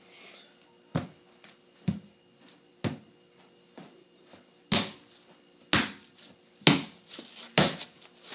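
Footsteps of a person walking in sneakers across a room's floor, about one step a second, the steps louder in the second half.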